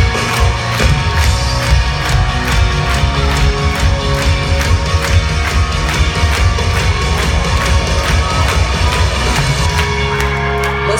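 Live pop-punk band playing at full volume, with drums keeping a steady, fast beat and faint crowd noise underneath, heard from far back in a large hall.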